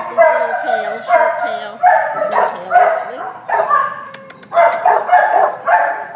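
Dogs barking in a shelter kennel block, about ten barks coming one or two a second.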